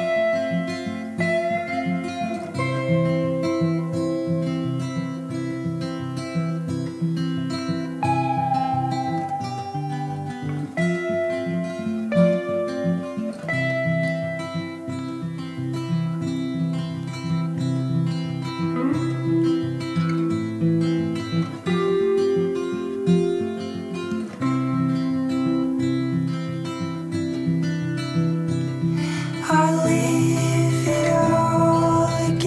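Instrumental passage of an indie rock song: a strummed acoustic guitar carries the rhythm under held, melodic electric guitar lines, with no singing.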